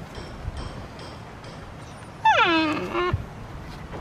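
A dog gives a single whine, just under a second long, about two seconds in; its pitch falls steeply as it goes.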